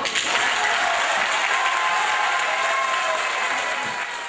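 Audience applauding steadily as the accordion-and-guitar music stops.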